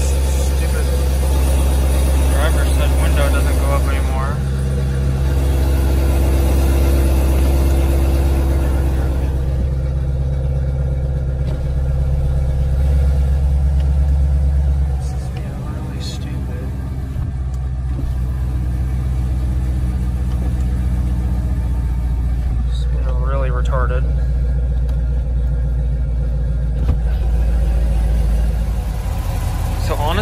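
C7 Corvette's 6.2-litre V8 idling steadily after a spark plug change, running smoother than the bad shaking it had before.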